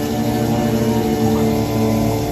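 Background music of held low notes, without a clear beat.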